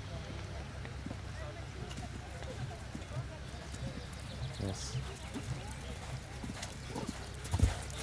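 Anglo-Arab stallion's hooves cantering on a sand arena: soft, irregular hoofbeats, with a louder thump shortly before the end.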